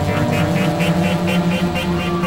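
Electronic synthesizer drone with sustained low tones, overlaid by a rapid pulsing pattern of about four pulses a second.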